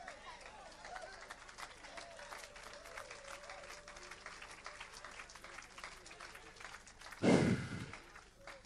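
Congregation responding with scattered hand clapping and faint, distant voices. A brief loud noise comes near the end.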